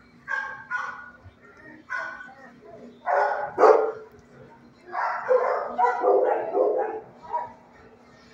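Dogs barking in bursts: single barks about half a second in and again at two seconds, a loud cluster of barks around the middle, and a quicker run of barks and yips near the end.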